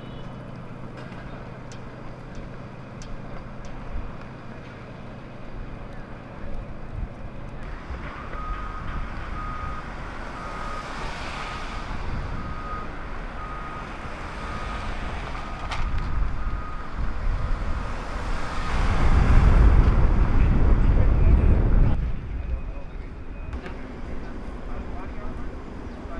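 City street traffic with a low steady hum at first. Then a vehicle's reversing alarm beeps evenly, a little more than once a second, for about eight seconds while a car drives past. A louder vehicle passes close by near the end, the loudest sound here.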